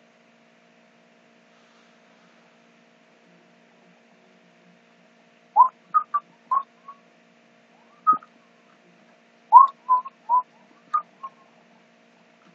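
Pen squeaking on paper while writing. After about five seconds of near silence come a dozen short, high squeaks in two clusters a few seconds apart, over a faint steady hum.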